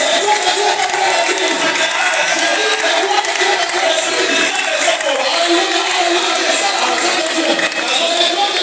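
A loud congregation of many voices singing and cheering together over music, without a break.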